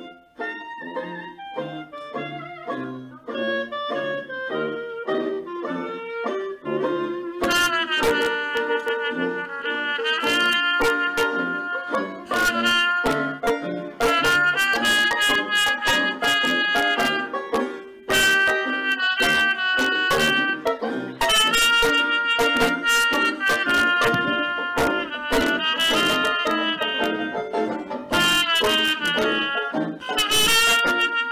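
Trumpet played with a metal mute in the bell, carrying the melody of an early twelve-bar blues over an accompaniment. The music grows louder and fuller from about seven seconds in.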